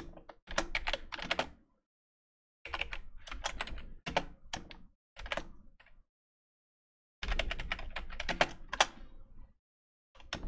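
Typing on a computer keyboard: several quick runs of key clicks with short silent pauses between them, the longest run near the end.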